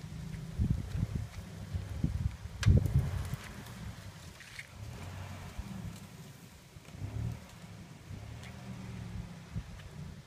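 A four-wheel-drive's engine running at low revs as it is manoeuvred through the bush, with a few short knocks, the loudest about three seconds in.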